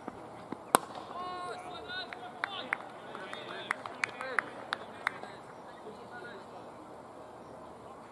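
A single sharp crack of a cricket ball off the bat just after the delivery, followed by fielders calling out and a few scattered handclaps.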